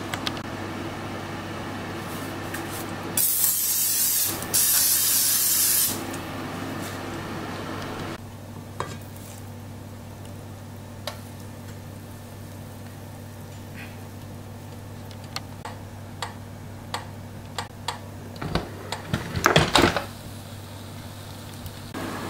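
Cooking spray hissing from an aerosol can in two bursts, about a second and a second and a half long, onto nonstick waffle plates. After that a steady low hum carries on with a few light clicks, and there is a short clatter of knocks near the end.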